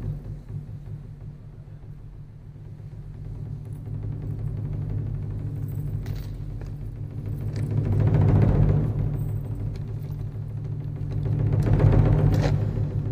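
Teochew opera percussion accompaniment: a low drum roll rumbling on steadily, swelling louder about eight seconds in and again near the end.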